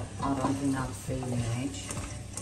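A person's voice over a faint hiss of hot oil from a frying pan of potatoes.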